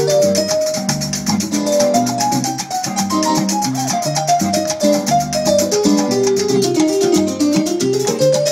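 Live Latin band playing an instrumental passage in a salsa rhythm: bass and drum kit under a melody that steps up and down, with a shaker keeping fast, even strokes on top.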